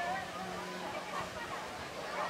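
Several spectators talking at a distance, their voices overlapping, over a faint steady low hum.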